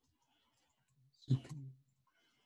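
A single short voiced sound from a person, about half a second long, starting with a sharp catch in the throat and trailing off as a low hum, a little past the middle.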